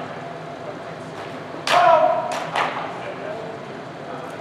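A metal object is struck once, giving a loud clang that rings briefly, followed by two lighter knocks. Voices murmur in the background.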